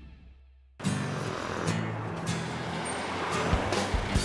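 Background music fades out, then about a second in, music starts again suddenly along with the noise of passing street traffic.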